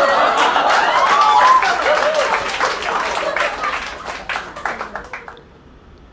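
Comedy club audience applauding and laughing after a punchline, the clapping dying away over about five seconds and then cut off abruptly.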